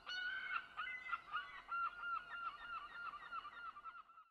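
A bird calling in a rapid series of short, hooked calls, about four to five a second, growing steadily fainter.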